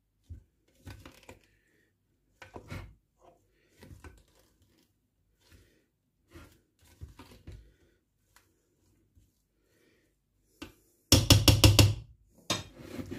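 Faint, scattered knocks and handling sounds, then near the end a loud rapid rattle of about seven sharp clicks in under a second.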